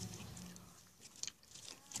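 Faint sticky clicks and squishes of homemade slime being handled and stretched, a few small clicks in the second half, over a faint low hum at first.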